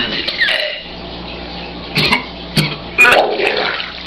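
A man vomiting a large mouthful of milk onto a tabletop: sudden retching heaves near the start, about two seconds in and around three seconds, with liquid gushing and splashing.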